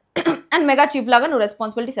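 A woman speaking, opening with a brief throat clear just after the start.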